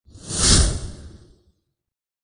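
Whoosh sound effect with a deep rumble under it, swelling to a peak about half a second in and fading away by a second and a half.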